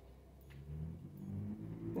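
Low, steady motor hum that grows louder from about half a second in.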